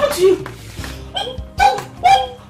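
A few short, sharp voiced calls, one low one just after the start and several higher ones in the second half, over background music.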